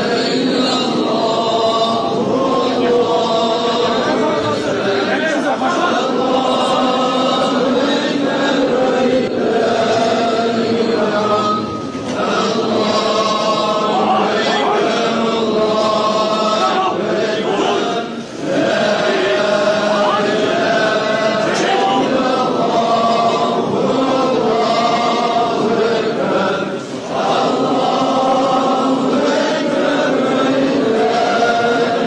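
A large crowd of men chanting together in unison, many voices at once, with a short pause three times.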